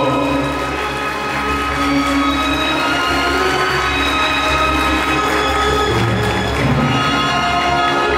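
Music with sustained, held chords.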